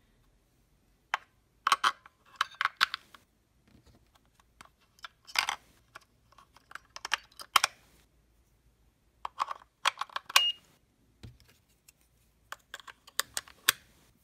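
Three AAA batteries being fitted one by one into the spring-contact battery compartment of a plastic handheld thermometer. Irregular clusters of sharp clicks and rattles are separated by short silences. Near the end, the plastic battery cover is pressed shut with a few more clicks.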